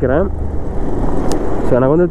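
Motorcycle engine running steadily at low road speed, with wind and road noise on the rider's microphone.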